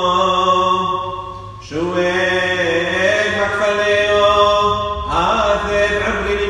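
A male voice chanting a Syriac Hasho (Passion Week) hymn in long, held notes, with a short break for breath about a second and a half in.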